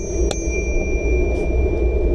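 A bicycle bell struck twice in quick succession, ding-ding, then ringing on with a clear high tone that slowly fades, a warning to pedestrians walking on the path ahead. A steady low rumble from the moving bike runs underneath.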